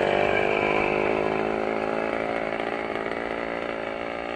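A motor engine running steadily, its sound slowly fading.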